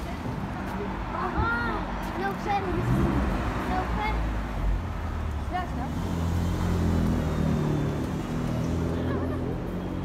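Street traffic with a car engine running close by, its low hum steady through the second half, under the chatter of passers-by.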